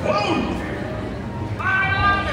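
A voice making long, drawn-out sliding calls rather than ordinary speech: one sweeping down in pitch just after the start, another rising and held near the end, over crowd noise.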